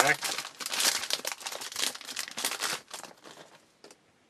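A 2012 Topps Tribute baseball card pack's foil wrapper being torn open and crinkled by hand, a rapid crackle that fades out after about three seconds, followed by a few faint clicks.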